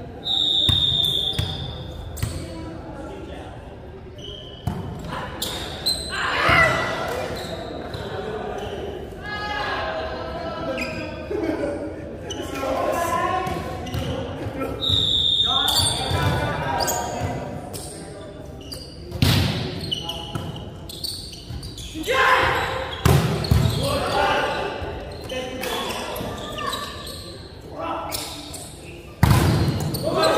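Volleyballs being struck and bouncing on a hardwood gym floor, sharp smacks echoing in a large hall, with players' voices calling out between them. The loudest hits come a little past the middle and near the end.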